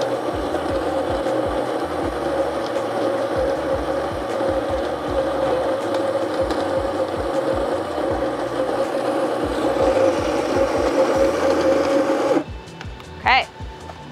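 Baratza Encore ESP conical burr grinder running, a steady motor whir as it grinds coffee beans at a medium-fine setting. It cuts off abruptly about twelve seconds in, followed by a short rising squeak.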